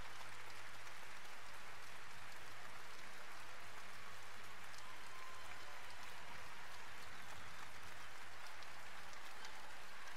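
Arena crowd applauding steadily, a dense even patter of many hands clapping in support of an injured player being taken off the court on a stretcher.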